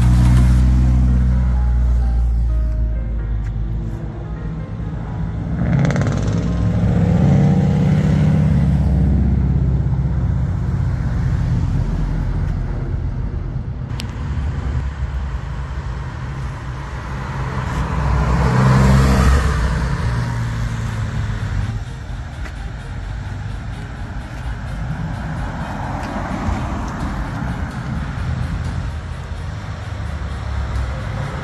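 Cars driving past one after another on the road out of a car meet, engines and tyres swelling and fading. The loudest pass is at the very start, from a Castrol-liveried Toyota Celica going by close. Further passes rise about six seconds in and again around eighteen to twenty seconds.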